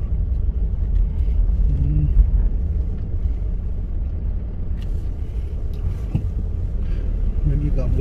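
Steady low rumble of a Hyundai Starex camper van's engine and tyres, heard from inside the cab as it drives slowly along a road.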